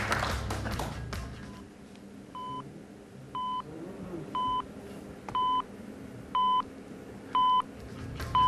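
Quiz-show answer timer beeping, a short electronic beep about once a second, six in all, counting down the contestant's time to answer. Before the beeps start, leftover applause and music fade out over the first second or two.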